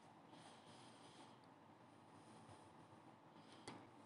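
Near silence: faint room hiss, with one faint click shortly before the end.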